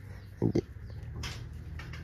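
Dry rice straw rustling and crackling faintly as a hand picks straw mushrooms out of a straw growing bed, with a few soft crackles and a low steady hum underneath.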